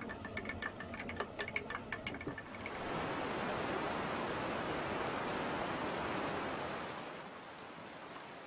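A tin scoop clicking and scraping in a bin of flour. From about three seconds in it gives way to the steady rush of fast-flowing river water, which fades near the end.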